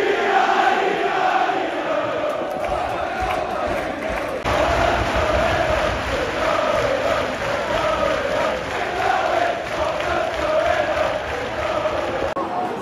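Large football crowd in a stand singing a chant in unison, many voices carrying a wavering tune without a break.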